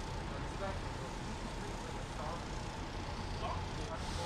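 Steady city street ambience: a low rumble of traffic with faint, distant voices.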